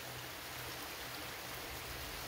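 Steady, even rushing hiss with no distinct events, like a soft wind or rain ambience bed, with a faint low hum beneath it.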